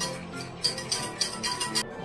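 Wire whisk clinking rapidly against a steel saucepan while gelatin is stirred, from about half a second in until just before the end, over background music.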